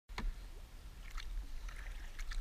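Kayak paddle blades dipping into calm river water, a few short splashes and drips from the strokes over a steady low rumble.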